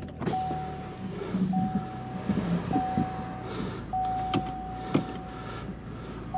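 Chevrolet SUV's dashboard warning chime repeating as a steady series of long single-pitch beeps, about one every second, over the low hum of the freshly started engine idling. Two short clicks come near the end.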